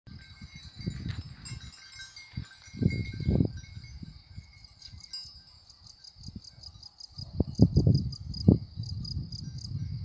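Meadow insects chirping steadily in high pitch, the chirps growing evenly pulsed in the second half, while gusts of wind rumble on the microphone about a second in, around three seconds and from about seven to eight and a half seconds.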